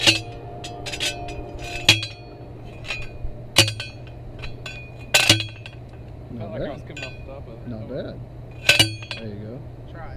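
A metal fence post being driven into the ground: about five sharp, ringing metal clanks, spaced one to three seconds apart, with the last two coming as quick doubles.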